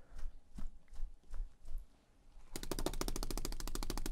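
A large paint brush being worked in a bucket of odorless paint thinner, with faint scattered clicks and swishes. About two and a half seconds in, it is beaten against the brush stand to knock the thinner out, giving a fast, even rattle of about ten knocks a second.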